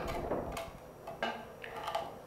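Kitchen knife working chicken meat off the bone on a wooden chopping board: faint scraping with a few light taps of the blade on the wood.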